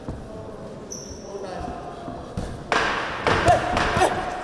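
Boxing bout: dull thuds of gloves and feet on the ring canvas, with shouting voices from ringside that suddenly get much louder about three seconds in.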